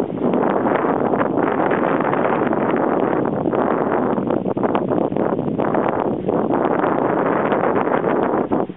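Wind buffeting the camera microphone: a loud, steady rushing noise with a few brief dips.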